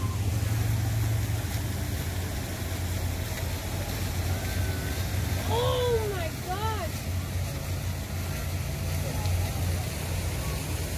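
Steady low rumble of background road traffic. About six seconds in there are a few brief rising-and-falling whoops.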